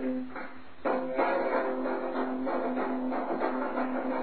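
Guitar strumming chords in a lo-fi home-recorded punk song, with no singing, and a hard fresh strum about a second in.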